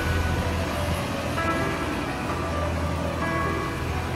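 City street traffic noise with a steady low rumble as a city bus drives away, under soft background music.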